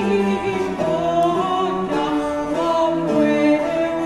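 Medieval cantiga performed by an early-music ensemble: a woman singing the melody over period instruments, bowed fiddle and plucked lutes, with sustained lower notes underneath.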